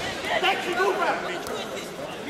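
Many voices shouting and calling over one another, as spectators and team members cheer on a kickboxing bout in a large sports hall. A single sharp knock comes about one and a half seconds in.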